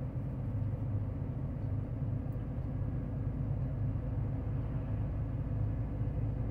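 Steady low rumble of a semi-truck on the move, its engine and tyre noise heard from inside the cab while it cruises slowly behind another truck.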